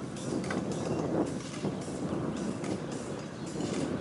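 Horse-drawn carriage in motion: a steady clattering rattle of wheels and fittings with irregular sharp clicks, over the horses' hoofbeats.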